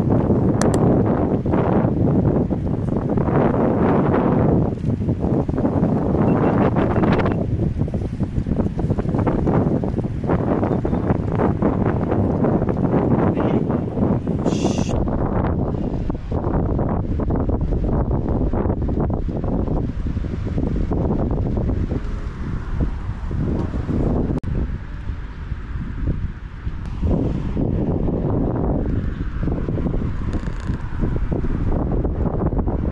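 Wind buffeting the microphone: a loud, low rush of noise that swells and dips with the gusts. About halfway through the sound changes abruptly and the upper hiss drops away.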